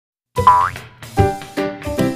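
Short music intro jingle: silence, then a rising glide sound effect about half a second in, followed by a beat of bass-heavy hits with chords.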